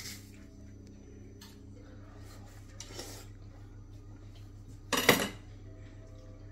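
Kitchen knife cutting a ripe watermelon slice on a plate, with faint scrapes and light clicks of the blade against the plate. A short, louder sound comes about five seconds in.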